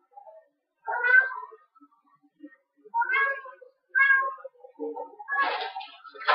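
A cat meowing three times in short calls, about a second in, then at three and four seconds, followed by a brief burst of rustling noise near the end.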